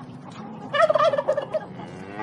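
A turkey gobbling: one rapid, rattling call lasting just under a second, starting about three-quarters of a second in, over a steady background rush.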